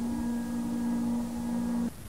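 Sonified recording of ultra-cold liquid helium-3: a steady low hum with overtones over a constant hiss, cutting off sharply just before the end.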